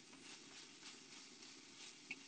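Near silence, with a faint hiss of chopped onions frying in a pan as they are stirred with a wooden spoon.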